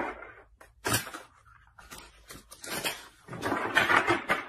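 A deck of tarot cards being handled and shuffled by hand: a single snap about a second in, then a quick run of card clicks and rustles in the last second or so.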